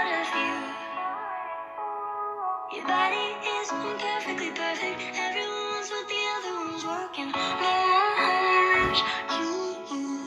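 Pop song with a woman's processed lead vocal over a backing track. The mix thins out briefly about two seconds in, then the full arrangement comes back in.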